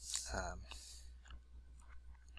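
A spoken 'um', then a few faint clicks spaced roughly half a second apart over a low steady hum.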